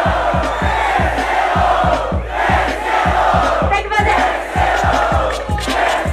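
A crowd cheering and shouting over a trap-funk beat, its kick drum hitting steadily about four times a second.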